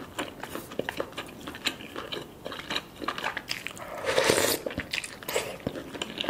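Close-miked eating sounds of noodles and soft tofu stew: wet chewing with many small mouth clicks, and about four seconds in one loud, hissing slurp of noodles.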